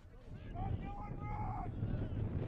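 Wind buffeting the microphone, a low rumble that grows louder about half a second in, with one drawn-out shout from a voice whose words can't be made out.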